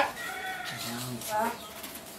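Chickens clucking, mixed with a man's voice calling out.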